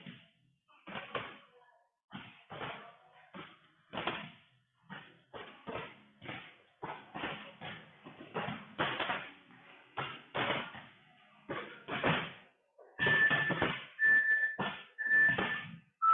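Irregular thuds, knocks and slams from a group doing interval exercises in a gym. Near the end, three short high beeps about a second apart: an interval timer counting down the end of a 20-second work round.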